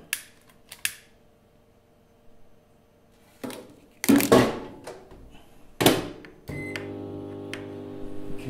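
A lighter clicks, a glass jug is set down inside a Kenwood microwave oven and the door is shut with a knock; after a short beep, the microwave starts running with a steady low hum.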